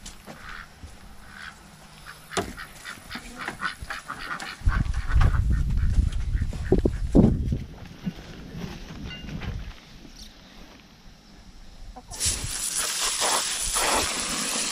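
Domestic ducks quacking now and then over rustling and handling noise, with a stretch of low rumble in the middle. About twelve seconds in, water starts gushing from a garden hose and keeps running.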